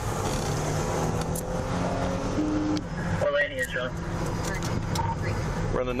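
Steady road and engine noise of a patrol car driving on the freeway, heard from inside the car, with a short muffled voice about halfway through.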